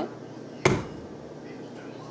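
A single sharp clack as the paddle attachment is fitted onto a stand mixer.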